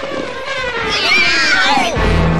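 Cartoon sound effects: a long whistle-like tone falling steadily in pitch, joined about halfway through by high wavering squeals.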